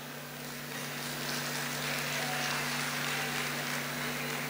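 Audience applauding in a hall, swelling about a second in and easing off near the end, with a steady low hum underneath.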